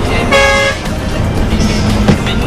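A vehicle horn toots once, a single steady tone lasting about half a second, over background music.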